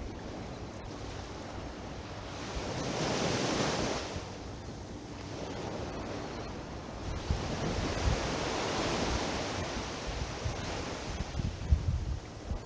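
Small waves breaking and washing up a sandy shore, the surf swelling about three seconds in and again from about seven to ten seconds. Wind buffets the microphone with a low, uneven rumble underneath.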